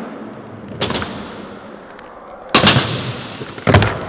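Skateboard wheels rolling on the ramp and concrete floor, with a sharp clack about a second in. Loud slaps and clatter about two and a half seconds in and again near the end as the board pops up, flips away from her feet and lands on the floor: a missed fakie shove-it.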